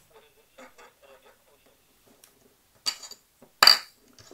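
Two sharp clicks about a second apart near the end, the second the louder, from a small loudspeaker and an ISD1820 recorder board being handled and moved about on a cutting mat.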